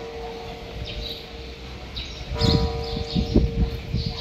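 A steady mid-pitched hum with a few overtones, held throughout and swelling in the second half, with some low rumbling bumps about two and a half seconds in and a few faint high bird chirps.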